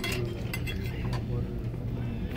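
Restaurant dining-room background: a steady low hum with a few light clinks of tableware in the first second, and faint voices in the room.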